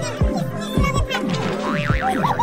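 Background music with a steady beat: low drum hits about twice a second, each with a falling-pitch slide, under a wavering high melody.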